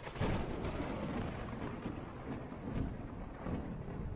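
A sudden rumbling boom, followed by steady low rumbling noise with a few scattered knocks.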